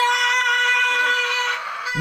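A young girl screaming in a tantrum: one long, high wail held at a steady pitch, easing slightly near the end.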